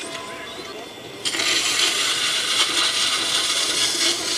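A potter's rib scraping along the wall of a wet clay pot as it turns on the wheel: a steady hiss that starts suddenly about a second in.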